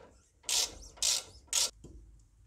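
A ratchet clicks in three short bursts, about half a second apart, as it turns a T45 Torx bit to loosen a brake caliper guide bolt.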